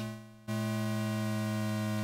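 Buzzy synthesizer tone rich in overtones from a DIY modular synth, gated through a VCA by an attack-release envelope. It fades away over about half a second, then cuts back in suddenly with a fast attack and holds steady.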